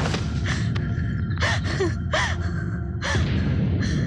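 Several short gasping, distressed vocal cries with wavering pitch over a steady background film score.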